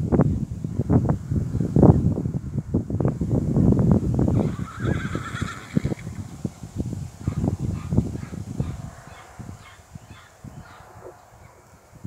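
A horse whinnying once, a wavering call about four and a half seconds in, over loud low rumbling thumps that die away in the last few seconds.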